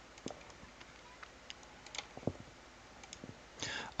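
Faint, scattered clicks of a computer mouse, six or seven spread unevenly, with a soft breath just before the end.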